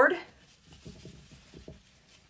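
Faint scratchy rubbing of macrame cord being pulled and wrapped around the neck of a mason jar, a string of short soft rubs.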